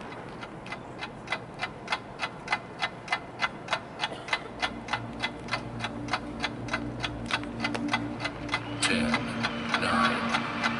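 Steady clock-like ticking from the marching band's front ensemble, about three ticks a second, opening the show. About halfway through, a low sustained tone comes in under the ticks and shifts pitch near the end.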